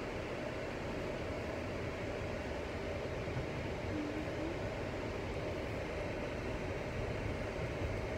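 Steady road and engine noise inside a moving car's cabin, a low, even rumble at a constant level.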